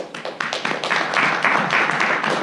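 Audience applause: scattered claps that build within the first second into dense, steady clapping.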